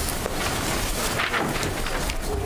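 Steady background noise of a meeting room picked up by the microphones, with a few faint clicks and a brief noisy swell just over a second in.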